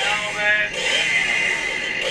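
Audio of a video playing through a phone's small speaker: music with a voice in it, sounding thin and tinny.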